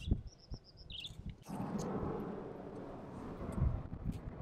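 A small bird chirping: a quick run of high chirps, then one more. About a second and a half in, a low steady background noise sets in.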